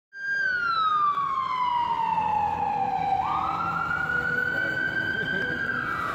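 Emergency vehicle siren wailing: its pitch slides slowly down over about three seconds, jumps sharply back up, holds, and begins sliding down again near the end.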